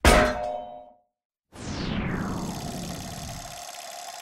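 Intro sound effects: a loud metallic clang that rings out for under a second, then after a short silence a falling whoosh that settles into a long, fading ringing tone.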